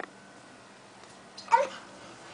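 A toddler's single short, high-pitched vocal squeal about one and a half seconds in, over quiet room tone.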